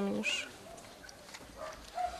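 Faint distant dog barking: a few short barks near the end, after a voice trails off.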